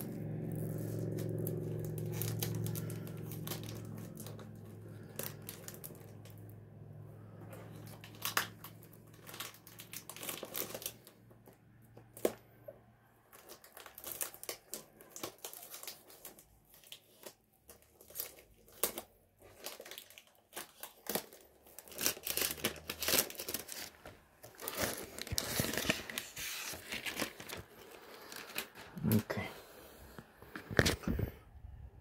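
Clear plastic film being torn and crumpled off a perfume box, in irregular crackles and rustles with small handling taps, busiest near the end. A low steady hum fades out over the first several seconds.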